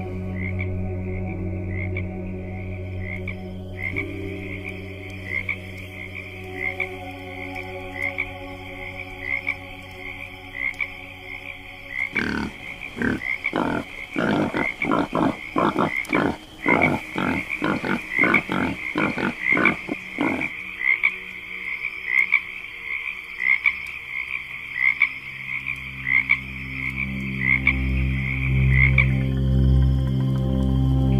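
Frogs croaking in a quick run of about two to three croaks a second for some eight seconds, starting about twelve seconds in, over crickets chirping steadily about twice a second. Underneath is a low sustained ambient music drone that swells near the end.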